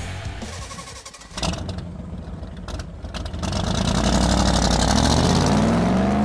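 Rock background music ending, then a car engine revving up as a sound effect, its pitch rising steadily and loudest near the end.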